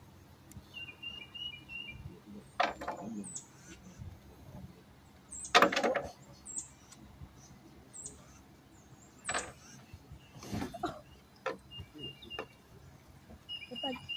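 Small birds chirping in short runs of high notes, near the start and again toward the end. Several sharp knocks or bumps come in between, the loudest about halfway through.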